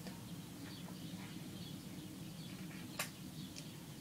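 Quiet mouth sounds of eating ice cream, with faint small ticks and one sharp lip smack about three seconds in, over a low room hum.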